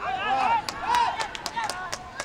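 Footballers shouting short calls to each other in a goalmouth scramble after a corner, with a rapid series of sharp knocks through the second half.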